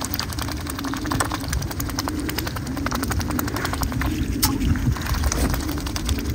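Mute swans dabbling their bills in shallow water, feeding on floating grain: a rapid, irregular run of wet clicks and small splashes as the bills sift the surface. A low wavering hum runs underneath.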